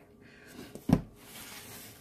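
A cardboard cake-mix box set down on a countertop: one short thump about a second in, with faint rustling around it.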